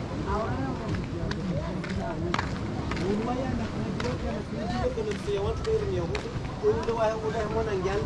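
Voices talking and calling out, with a few short clicks or knocks among them.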